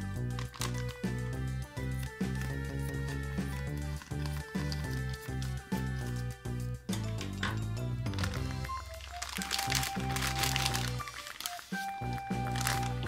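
Background music playing, over the crinkling of a thin clear plastic bag being handled and cut open with scissors. The crinkling is plainest in the second half.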